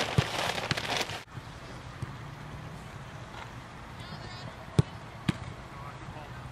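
Two sharp thuds of a soccer ball being struck, about half a second apart near the end, over a steady low outdoor background. Voices and small knocks fill the first second.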